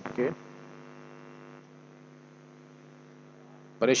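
Steady electrical mains hum, a low buzz with many evenly spaced overtones. About a second and a half in, a faint background hiss cuts out and the level dips slightly, as the mains power goes off.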